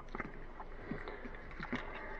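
Faint, scattered small metal clicks of handling as the tip of a 9mm cartridge pries the slide stop pin out of a SCCY CPX-1 pistol's frame.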